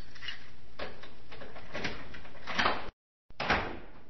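Door sound effect: a steady rattling noise with a few louder scrapes that cuts off suddenly, followed after a short gap by a thump.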